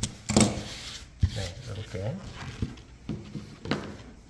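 Mohair pile weatherstrip being pressed into the groove of a window-screen frame with a screen spline pusher tool: rubbing and scraping, with a couple of short knocks.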